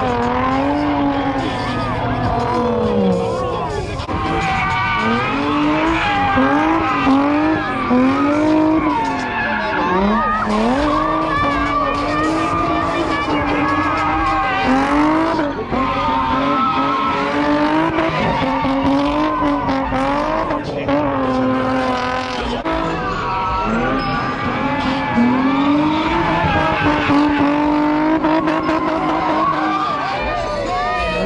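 A car doing donuts with its rear tyres spinning and squealing. The engine revs rise and fall about once a second as the throttle is worked through the slide.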